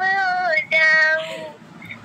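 A high-pitched voice singing two long held notes, the second ending about a second and a half in.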